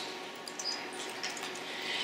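Quiet room tone in a lecture hall, a faint steady hiss with a small click at the very start and a few tiny ticks.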